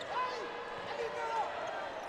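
Futsal players' shoes squeaking on a wooden indoor court, a few short chirps over faint arena ambience.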